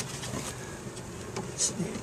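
Honeybees buzzing steadily around an opened hive, with a faint voice in the background.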